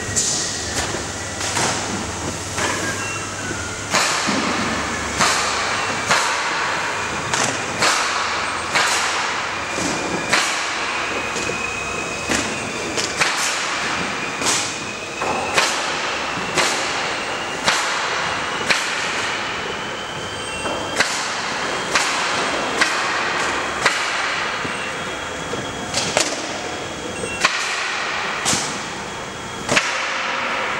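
Busy warehouse floor: sharp knocks and bangs every second or so over a steady background of working noise, with a faint thin whine in the background.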